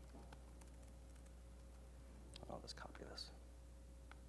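Near silence: faint muttered speech under the breath, with a few soft laptop keyboard taps.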